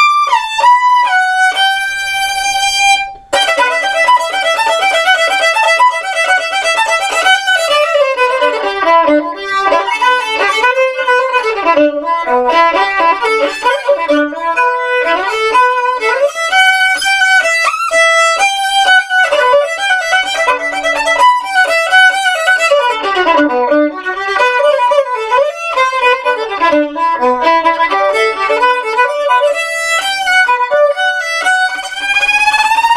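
Violin played with the bow: a long held note, a brief break about three seconds in, then quick runs of notes climbing and falling.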